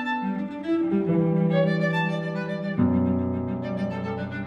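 Piano trio of violin, cello and piano playing, the bowed strings holding long notes that change pitch in steps. A deeper chord comes in near the end.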